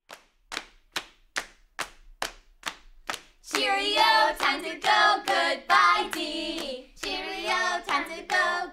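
Hands clapping a steady beat, a little over two claps a second, alone for about the first three and a half seconds; then singing voices join in over the continuing claps.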